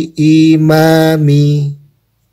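A man's voice reciting Arabic letter syllables in a drawn-out, sing-song chant. One long held stretch steps up in pitch and then down as the syllables change, and stops shortly before the end.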